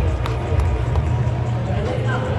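Ballpark public-address announcer's voice, echoing and indistinct, over crowd noise and a steady low rumble.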